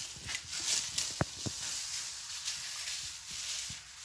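Raw chicken pieces being worked by hand in a bowl of wet seasoning-and-milk marinade: soft wet squelching with scattered small clicks, the clearest about a second in.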